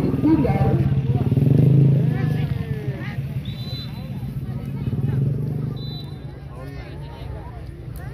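A small engine running steadily nearby, loudest in the first couple of seconds and fading away from about five seconds in, with voices of people around.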